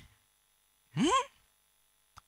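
A man's single short questioning 'hmm?', rising in pitch, about a second in after a moment of silence.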